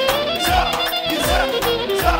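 Live band music with a clarinet leading a wavering, ornamented melody over a drum kit whose kick drum beats about twice a second.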